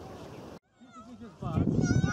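Faint steady harbour ambience that cuts off abruptly about half a second in. After a moment of silence, a crowded bathing beach comes in: a loud mix of many voices with high, wavering calls over it.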